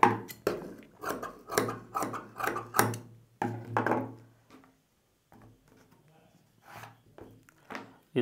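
Tailor's shears cutting cotton blouse fabric on a table along a marked line, a run of quick snips in the first three seconds, then a brief rustle of the cloth being moved. The rest is nearly quiet, with a few faint taps.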